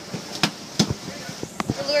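A handful of sharp knocks and thuds, spaced unevenly, two of them close together late on.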